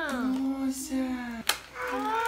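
A single sharp snap about one and a half seconds in, as a doll is pulled free of its cardboard-and-plastic toy box. Before it, a voice is drawn out on one long note.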